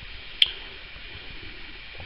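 A single short click about half a second in, over a low steady hiss.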